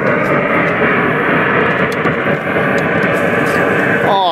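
Car power window motor running steadily as the door glass winds down.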